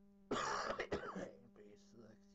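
A person clearing their throat in one harsh burst about a second long, starting a quarter second in, over a steady low electrical hum.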